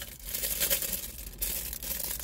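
Clear plastic packaging crinkling and rustling as it is handled, loudest in the first second and a half.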